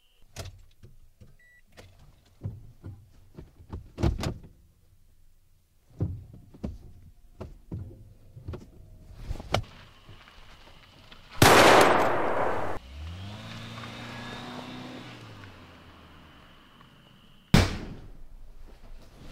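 Scattered knocks and clicks, then a car engine is started. A loud burst about two-thirds of the way through is followed by the engine catching, rising in pitch as it revs, then settling and fading. A sharp, loud thump comes near the end.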